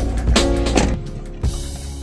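Background music with drum hits and held instrument notes, dropping away about a second in, over a steady low hum.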